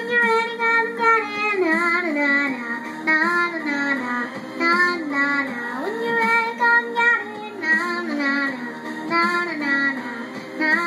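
A young girl singing a wordless melodic passage, holding long notes and sliding down through vocal runs.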